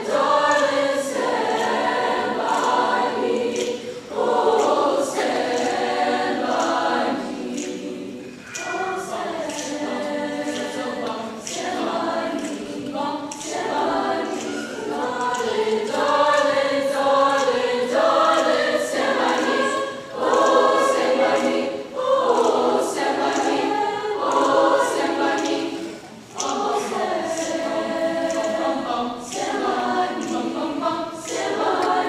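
Large high-school choir singing in sustained phrases, with short breaks between phrases.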